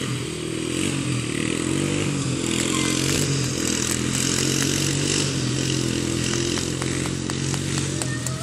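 Small engine of a youth four-wheeler (ATV) running at a fairly steady speed, its note wavering slightly as it rides along.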